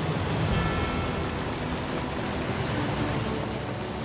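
Pumped water gushing out of a large discharge pipe and splashing into a pond: a steady rush.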